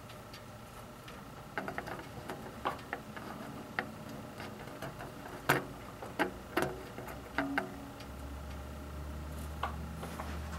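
Scattered light clicks and taps at irregular intervals, the sharpest about halfway through, then a low steady hum from about eight seconds in.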